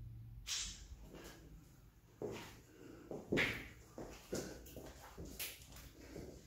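Quiet, irregular footsteps and scuffs on a gritty, debris-strewn tiled floor, about one every half second to a second.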